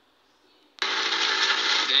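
Near silence for most of a second, then a voice cuts in abruptly and loudly over a steady hiss-like noise.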